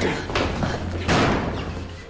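A hard slam about a second in, the loudest sound here, trailing off briefly, with a lighter knock a little before it.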